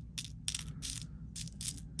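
Glass bugle beads clicking against each other and against a plastic bead tray as fingers stir through them: a scatter of small, light clicks.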